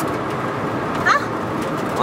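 Steady road and engine noise heard from inside a moving car's cabin, with one short voice sound about a second in.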